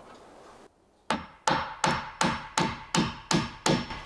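Hammer nailing the planks of a wooden bed frame: eight steady strikes, about three a second, starting about a second in, each with a short ring.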